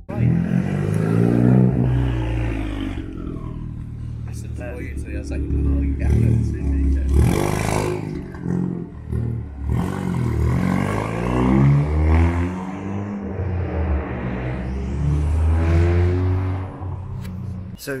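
Ford Fiesta ST fitted with a Revo RT330 turbo and a decat exhaust, its engine revved up and down several times.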